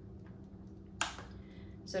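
A single short plastic click about a second in, from handling the practice arm's IV tubing clamps, over a quiet, steady low hum of room tone.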